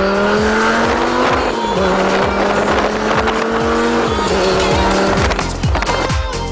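A car engine pulling hard, its note climbing steadily and dropping as it shifts up about one and a half seconds in and again about four seconds in. Dance music with a steady kick-drum beat plays along with it.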